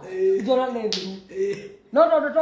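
A single sharp finger snap about a second in, between bits of men's talk.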